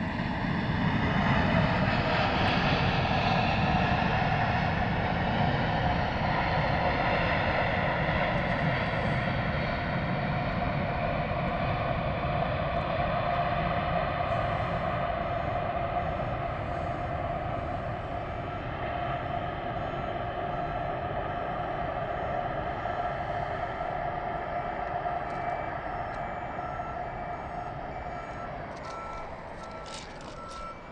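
An Emirates Airbus A380's jet engines on its landing roll just after touchdown: a loud roar with several whining tones that builds over the first couple of seconds and holds steady. It eases gradually over the second half as the jet slows down the runway.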